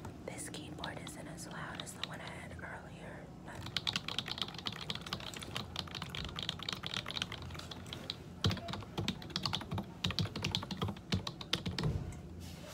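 Typing on a computer keyboard: rapid, dense keystrokes from about three and a half seconds in, with some heavier key strikes in the second half.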